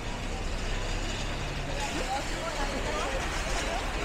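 Street ambience: steady traffic noise with a low hum, and faint snatches of people talking in the second half.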